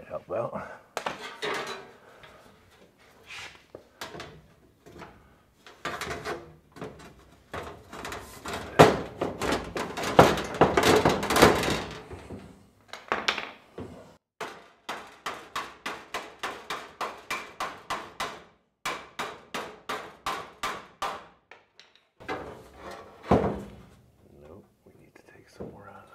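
Thin sheet-steel panel being handled and shifted against a car body: irregular clanks and scrapes of metal, then a run of quick, evenly spaced taps, about three or four a second, for several seconds.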